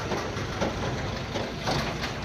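Outdoor background noise: a steady low rumble with faint, indistinct voices in the distance.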